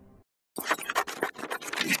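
Scratchy, crackling noise effect in a logo animation, made of many rapid clicks, starting about half a second in after a brief faint hum.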